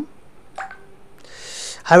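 A short pause in a man's lecturing voice: a faint single click about half a second in, then a soft breath-like hiss just before he starts speaking again near the end.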